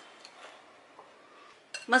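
A couple of faint clinks of a spoon against a mixing bowl while a flour batter is being stirred, the second followed by a brief faint ring.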